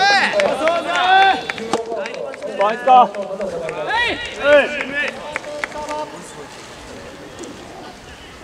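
Men's voices shouting short calls, one after another, for about the first five seconds. After that there is quieter outdoor background with a few faint clicks.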